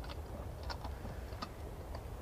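Radio-drama sound effects of a passenger climbing up into a horse-drawn pony trap: sparse, irregular faint clicks and knocks over a low steady rumble.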